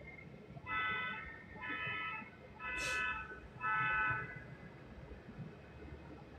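A horn sounds four times, about a second apart. Each blast lasts about two-thirds of a second at a steady, chord-like pitch. A short sharp click comes during the third blast.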